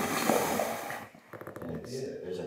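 Indistinct talk from people around a meeting table, with a short pause a little after a second in.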